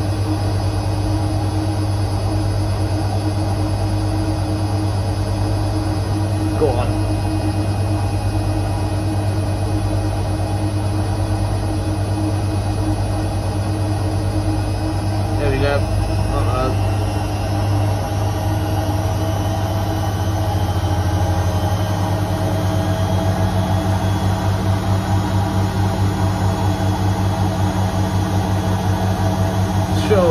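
Bendix front-loading washing machine on its 1000 rpm final spin with an unbalanced load: a steady motor hum and drum whir. About two-thirds of the way through, a rhythmic throbbing pulse sets in as the speed rises.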